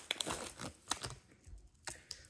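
Clear plastic packaging bag crinkling and crackling as a pearl necklace is pulled out of it, with a few sharp crackles in the first second and then only occasional ones.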